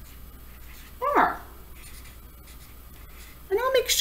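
Black felt-tip marker writing on a paper notebook, with faint scratching strokes. About a second in there is one short, gliding voiced sound.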